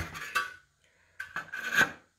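An aluminium channel part sliding and rubbing across an OSB board as it is handled, with a short scraping sound in the second half.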